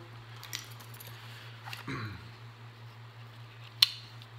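Small metal items handled with faint clicks and rustles, then one sharp, loud click near the end as the blade of a Kershaw Junkyard Dog folding knife snaps open. A steady low hum lies underneath.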